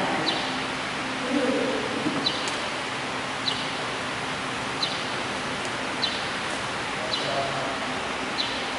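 Steady background hiss with a faint low hum and faint distant murmur. Over it, a short, sharp, high chirp repeats evenly about once every second and a bit.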